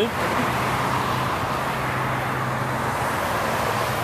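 Steady road traffic noise, a rush of tyres and engines, with a low steady hum that stops about three seconds in.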